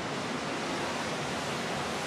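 Steady rushing wind and water noise on the open stern deck of a ship under way.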